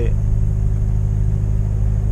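Volvo truck's diesel engine idling steadily, heard from inside the cab as a low, even hum.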